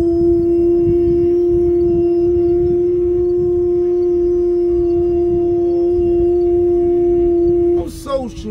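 A single note held dead steady for nearly eight seconds after sliding up into pitch, breaking off just before the end, over a low rumble.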